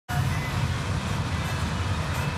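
Steady car engine and road rumble heard from inside a moving car's cabin.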